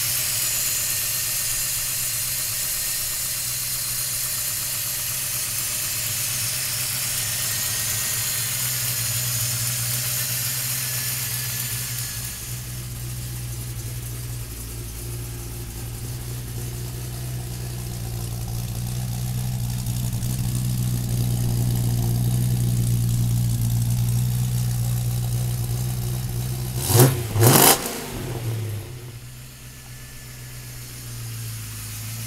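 The GM 383 cubic-inch V8 crate engine of a 1955 Chevrolet 3100 pickup idling steadily. A loud hiss sits over it for the first dozen seconds. Two quick, loud revs come close together near the end.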